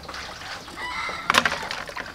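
A rooster crowing once, a little under a second in, ending in a short, harsh peak that is the loudest moment.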